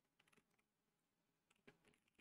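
Faint computer keyboard typing: two short bursts of quick key clicks, the second about a second and a half in.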